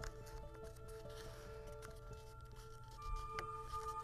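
Quiet background music of long held notes that change pitch now and then, with a few faint clicks of paper being folded by hand.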